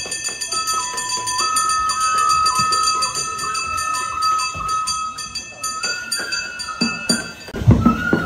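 Japanese festival music for a lion dance: a bamboo flute plays a slow melody of long held notes. Drum beats come in near the end.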